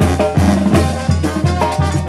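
Mexican street brass band (banda) playing a lively number: sousaphone bass notes in a steady pulse of about three a second, with drum kit and bass drum beating under held brass chords.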